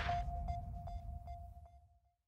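Closing sting of a news-programme promo jingle: a single held electronic tone with four faint ticks about 0.4 s apart, fading out.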